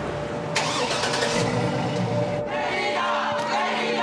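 Car engine starting and running as the vehicle pulls away, under a steady background music drone.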